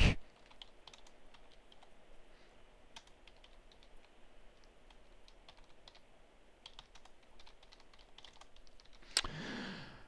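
Typing on a computer keyboard: a quiet, irregular run of keystrokes as a line of text is entered, with a brief louder hiss near the end.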